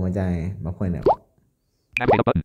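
Speech: a voice finishing 'I remember it', ending with a short, steeply rising sound about a second in, then a sharp click near the end.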